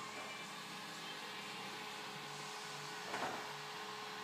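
Steady mechanical hum with a thin steady tone running through it, and one brief louder sound about three seconds in.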